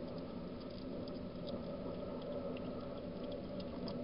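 Wild European hedgehog eating from a dish: quick, irregular small crunching and smacking clicks of chewing over a steady low hum.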